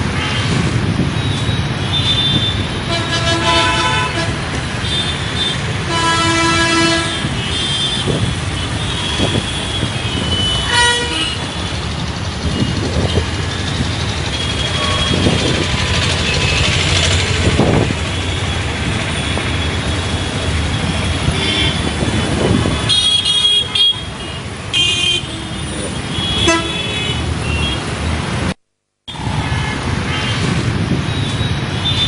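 City road traffic: a continuous rumble of engines and tyres with vehicle horns honking again and again, in short blasts, several close together in the last few seconds. The sound cuts out briefly near the end.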